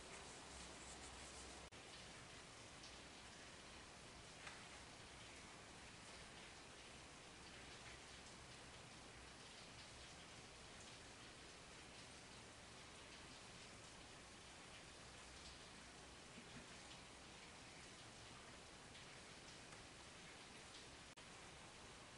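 Faint, steady hiss of rain falling outside, heard from indoors, with a few faint ticks.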